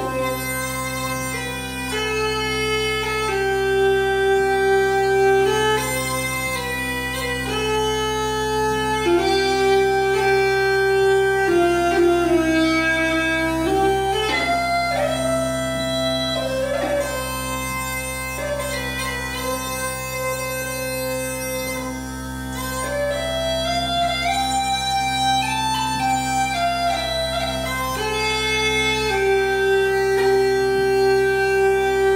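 Uilleann pipes played solo: a slow chanter melody of long held notes, with a few quick ornaments, over steady drones.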